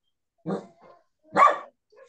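A dog barking twice, the second bark louder.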